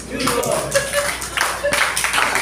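An audience applauds, a dense patter of many hands clapping, with a few voices mixed in.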